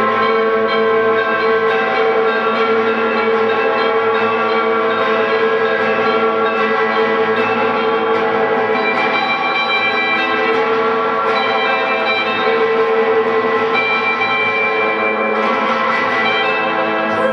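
Two electric guitars playing a slow psychedelic drone through effects, many sustained notes ringing over one another in a dense, steady wash.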